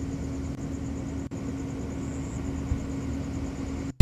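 Steady low hum over constant background noise, with one held mid-pitched tone and a faint, softly pulsing high whine.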